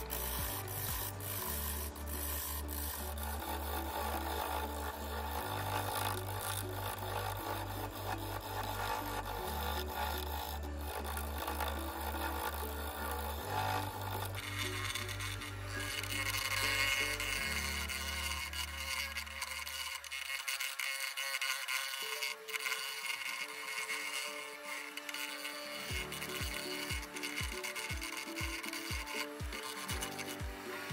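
Background music with a bass line that drops out about two-thirds through, then a steady beat near the end. Beneath it, the scraping of a gouge cutting a walnut bowl blank spinning on a Record Power wood lathe.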